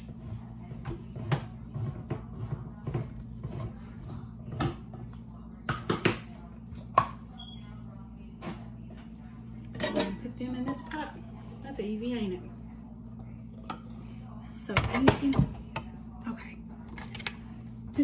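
Hand can opener clicking in short, irregular ticks as it is worked around the rim of a large can of black beans, followed by kitchen handling clatter, with one louder clatter about fifteen seconds in. A low steady hum runs underneath.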